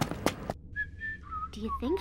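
Quick footsteps or taps for about half a second, then a thin, whistle-like melody of a few held notes stepping down in pitch.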